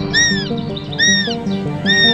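Background music, with a young northern goshawk calling over it: three wailing calls a little under a second apart, each rising and then falling in pitch.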